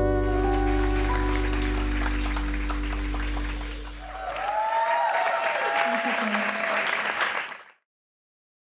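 A live band's final chord ringing out and dying away. About halfway through, the audience breaks into applause with a few cheers and whoops, and the sound cuts off suddenly near the end.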